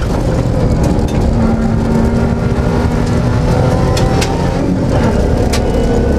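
Interior sound of a Suzuki Grand Vitara cross-country rally car's engine running hard under load on a gravel stage, with a few sharp knocks.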